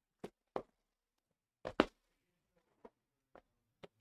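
Trading-card box being handled and worked open by hand: a scattering of short, sharp taps and clicks, the loudest a quick pair near the middle.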